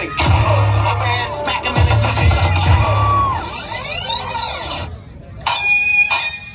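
Loud electronic dance music with a heavy bass beat, then a sweeping rise with the bass dropped out, a short gap about five seconds in, and the music coming back.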